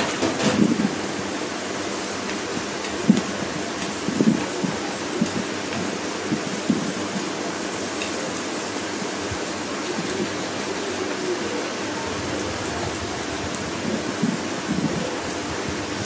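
Sliced onions sizzling steadily in hot oil in a frying pan, with occasional knocks and scrapes of a wooden spatula stirring them against the pan.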